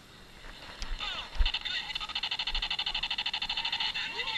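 Tactical laser tag gun firing on full auto: a fast, even stream of electronic shot sounds, about a dozen a second, starting about a second and a half in after a few short electronic chirps.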